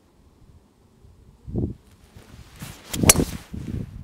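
Golf driver swung and striking a teed ball at about 100 mph clubhead speed: a brief rising whoosh, then a sharp crack of impact about three seconds in. A low thud comes about a second and a half in.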